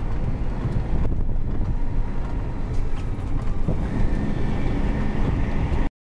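HME Ferrara ladder truck heard from inside its cab while driving: a steady low rumble of engine and road noise. The sound cuts off just before the end.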